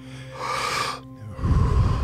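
A person doing power breathing, one deep breath cycle: a sharp hissing breath in through the mouth about half a second in, then a heavy breath blown out from about a second and a half. A soft, steady music drone runs underneath.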